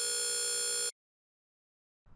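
Quantization noise, the error left when a 480 Hz sine wave is cut down to 3-bit resolution, played on its own as a steady, jarring buzz with a clear pitch. It cuts off suddenly about a second in.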